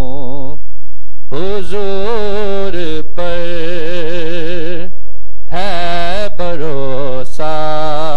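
A man singing a naat into a microphone: long held notes with wavering, ornamented pitch, in phrases broken by brief pauses.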